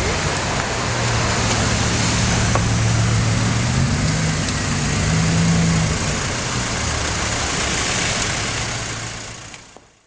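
Bugatti Veyron 16.4's quad-turbocharged W16 engine running at low speed as the car pulls past and away. Its note rises about four to five seconds in and then settles back, over a steady hiss of street traffic. The sound fades out near the end.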